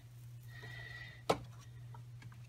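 A single sharp tap about a second and a half in, the card knocked against the metal tray to shake off loose embossing powder, over a low steady hum.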